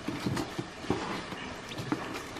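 Faint rustling with a few small clicks as the ribbon and holly-sprig decoration are worked loose from a cardboard gift box.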